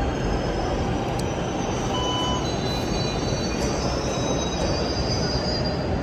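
Metro train running on the track, a steady rumble with faint high-pitched wheel squeal.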